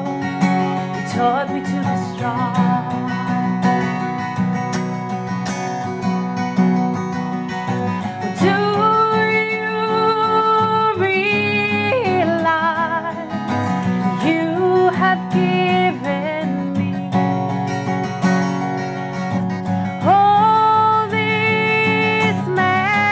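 A woman singing to her own strummed acoustic guitar, holding long notes with vibrato, one a little under halfway through and another near the end.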